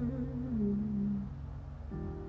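A woman humming a wavering tune over background music; the humming stops a little past halfway, leaving the music's held notes.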